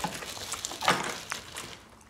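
Quiet mealtime sounds: a few light clicks of chopsticks against dishes, about a second in.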